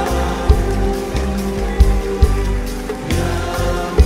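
Live Arabic ensemble music with strings and keyboard holding steady notes over deep drum strikes spaced irregularly about every half second to a second. The lead voice pauses after a long held note.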